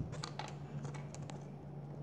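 Several faint, light clicks scattered through the first second and a half: fingertip taps on a tablet touchscreen as drawn strokes are undone.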